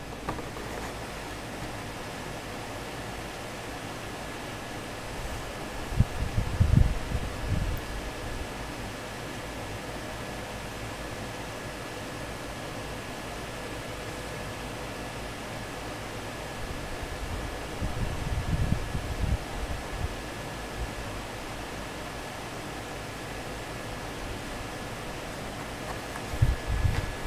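Steady room hiss with a faint, even electrical hum, broken by a few low bumps about six seconds in and again around eighteen to twenty seconds, as the carded toy car is handled on the wooden table.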